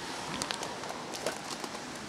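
Light crackling and ticking from a packet of cocoa and a backpack being handled, over steady outdoor background noise.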